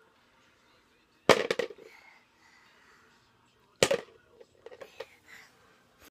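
Toy blocks clattering into a plastic bucket: two loud clatters, about a second in and near the middle, each a quick run of knocks, then a few lighter knocks near the end.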